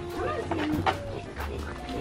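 A few brief farmyard animal calls over soft background music with a steady low bass.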